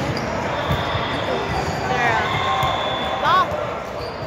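A ball bouncing on a hardwood gym floor and athletic shoes squeaking on the court, with a sharp squeak about three seconds in, over background voices.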